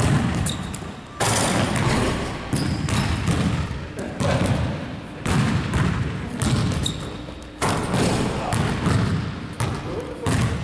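A basketball bouncing on a hardwood gym floor about once a second, each bounce echoing and dying away slowly in the large hall.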